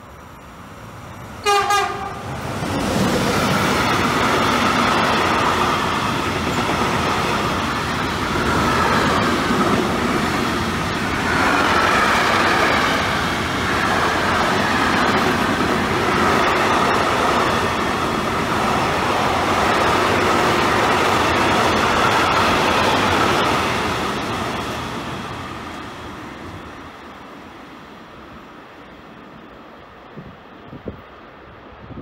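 A train horn sounds one short blast, then a container freight train passes, its wagons' wheels running loud and steady over the rails for about twenty seconds before fading away.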